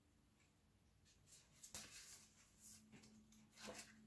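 Near silence: room tone with a few faint rustles of paper pages being handled and turned in a softcover book, the clearest about two seconds in and near the end.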